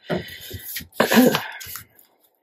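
A woman clearing her throat in two goes, about a second apart.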